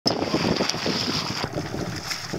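Wind buffeting the microphone over water splashing along a small boat's hull, with a steady high whine underneath.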